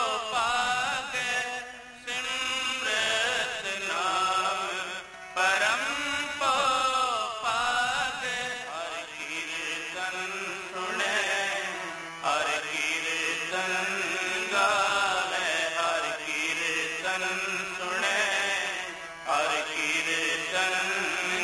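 Sikh shabad kirtan: a male voice sings Gurbani in long melodic phrases over harmonium and tabla, with brief breaks between phrases.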